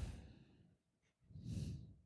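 Faint breathing from a person near the microphone: one breath trailing off at the start and a short sigh about a second and a half in.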